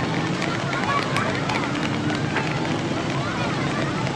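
Busy street ambience: traffic running steadily under a babble of voices, with scattered clicks and knocks.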